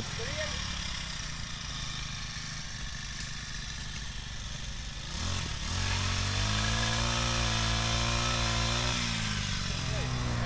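The small engine of a handheld power tool runs in the background. About five seconds in it revs up and holds a steady, high-revving drone, easing off slightly near the end.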